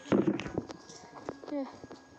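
Footsteps on a concrete yard: a series of sharp clicks, about three a second, with short bits of voice.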